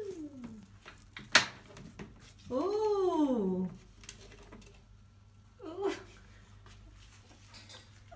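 African grey parrot calling from inside a plastic rubbish bin: a short falling call at the start, a loud drawn-out call that rises and then falls about two and a half seconds in, and a brief call near six seconds. A single sharp click about a second and a half in.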